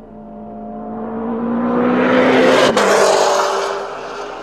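A car passing by at speed. Its engine note grows louder and climbs slightly, then drops sharply in pitch as it passes about two and a half seconds in, and fades away.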